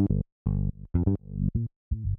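VPS Avenger synth bass sequence playing on its own: short, pitched low notes in a syncopated pattern. Some notes ring much brighter than others as the low-pass filter cutoff is turned.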